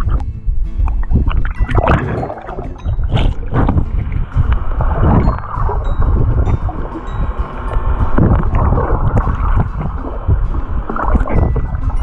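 Waterproof action camera taken under the sea surface by a diving swimmer: muffled sloshing, bubbling and a low rumble of moving water against the housing, swelling and falling irregularly.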